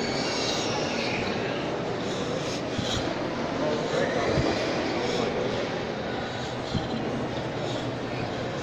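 Shopping-mall food court ambience: a steady rushing hum with indistinct voices of people talking in the background. Two faint knocks stand out, about four and a half and seven seconds in.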